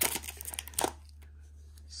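Foil wrapper of a MiniDV cleaning cassette being torn open and crinkled by hand: a run of crackles through the first second, ending in a sharper one, then quieter handling.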